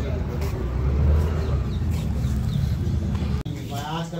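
Busy market street ambience: a steady low rumble with indistinct voices of people around. It cuts off abruptly near the end, where a single voice begins in a quieter room.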